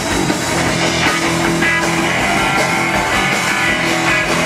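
Live rock band playing: electric guitar over bass guitar and a drum kit, steady and loud.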